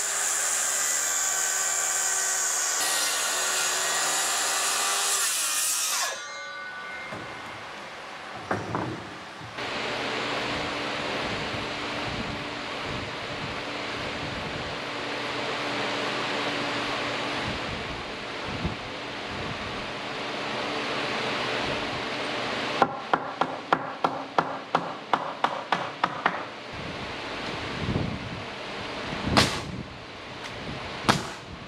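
A DeWalt cordless circular saw cutting through a board, a steady high whine for about six seconds that stops suddenly. Later a pneumatic coil nailer fires a quick run of about a dozen shots, roughly three a second, then once more near the end.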